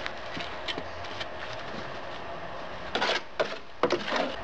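Gloved hand working wet sand-and-Portland-cement mortar onto steel diamond mesh: soft scraping and rubbing, with a louder cluster of scrapes about three seconds in and another just before the end.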